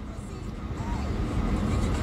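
Low rumble of a car heard from inside the cabin, growing gradually louder.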